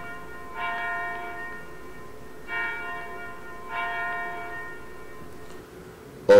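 A bell struck in two pairs of strokes, each ringing on and fading, with the last stroke dying away about five seconds in.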